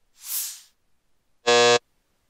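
A brief whoosh near the start, then a short, loud electronic buzzer about one and a half seconds in: a 'wrong' buzzer sound effect marking a don't.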